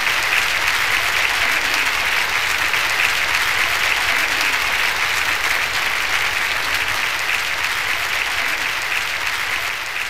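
Large audience applauding in a standing ovation: steady, dense clapping that eases slightly near the end.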